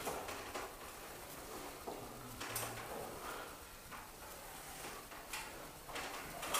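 Faint scattered clicks and small knocks over low room noise, with a brief low hum about two seconds in.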